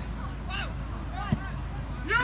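Faint scattered spectator voices over a low rumble of wind on the microphone, with a single short, sharp knock a little past halfway: the boot striking an Australian rules football in a set shot at goal.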